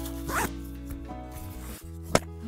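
A plastic cable tie being pulled tight through its ratchet, a short zipping sound about half a second in, over steady background music, with a brief laugh.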